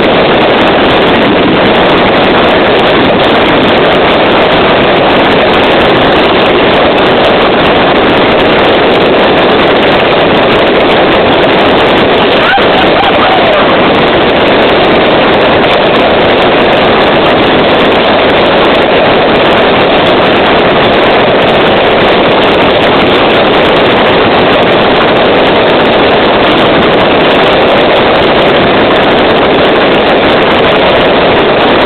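Fireworks display at full barrage: continuous bursts and crackle, so loud that they overload the camera's microphone and run together into a steady, distorted din.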